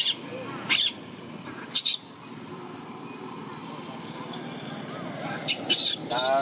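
Baby macaque screaming in short, shrill bursts, about five in all: distress cries of a frightened infant just after a bath.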